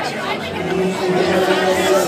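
A large crowd talking and chattering, with a steady held low tone underneath.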